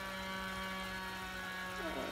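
Steady electrical hum with a buzzing row of overtones from a kitchen appliance running at the stove.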